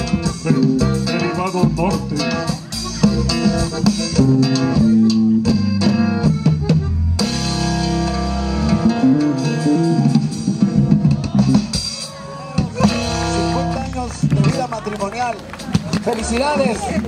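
Live band music with electric guitar, bass and drum kit, with voices over it. The sound changes abruptly about seven seconds in.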